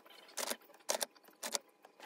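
Printed sheets of sublimation paper being handled and laid on a blanket: three short rustles about half a second apart.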